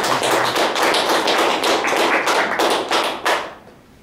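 A small audience applauding, dense hand claps that die away about three and a half seconds in.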